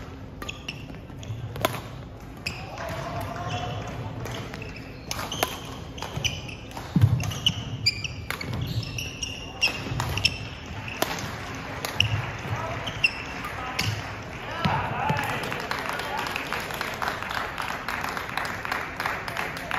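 Badminton rally in a sports hall: sharp racket strikes on the shuttlecock about once a second, shoes squeaking on the wooden court and thudding footfalls as the players lunge. Voices rise in the hall near the end as the rally finishes.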